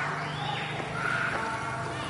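High-pitched voices of young children calling out, over a steady low hum.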